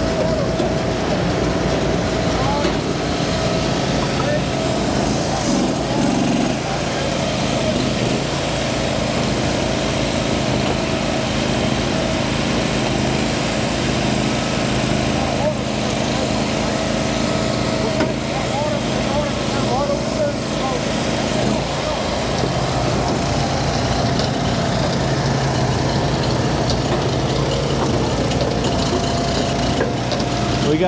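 Small gasoline engines of hydraulic firewood splitters running steadily, with their pitch shifting a couple of times. People talk in the background.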